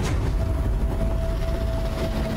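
A flying airship's engine rumbling steadily in a cartoon soundtrack. A thin held tone comes in about half a second in.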